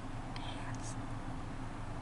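Faint whispering, with a few brief hissy sounds about half a second in, over a steady low hum and hiss.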